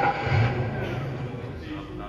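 Car engine being cranked by its starter without catching, played as a stage sound effect for a black cab that fails to start. The cranking fades away after about a second and a half.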